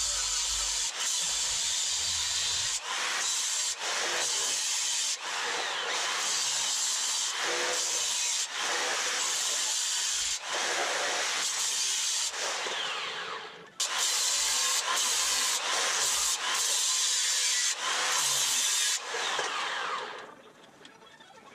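Large angle grinder with an abrasive cut-off wheel cutting through a steel frame rail: a loud, steady grinding screech with brief dips every second or two and a short break a little past halfway.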